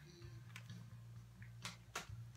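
Quiet room tone with a steady low hum, and two short, faint clicks near the end.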